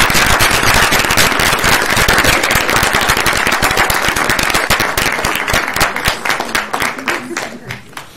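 Small audience applauding: dense clapping that thins into scattered separate claps and dies away near the end.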